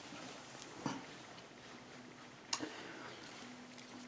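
Quiet room with faint handling clicks: a soft one about a second in and a sharper one about two and a half seconds in, with a faint low steady hum near the end.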